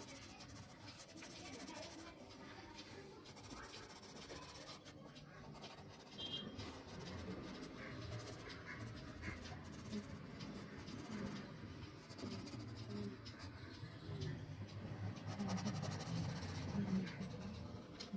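A colouring pencil scratching back and forth across paper in quick shading strokes, filling in the saffron stripe of a flag drawing.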